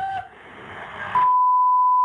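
Steady, loud censor bleep that starts just past halfway, masking a swear word in a recorded police phone call. Before it comes the hiss of the phone line.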